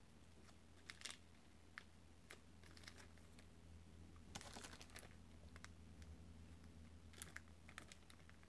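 Near silence, broken by a few faint, scattered clicks and crinkles of small plastic zip-lock bags of rubber washers being handled, over a low steady hum.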